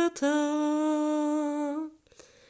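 A single voice humming a hymn tune without words and with no accompaniment heard: a short note, then one long held note that stops shortly before the end.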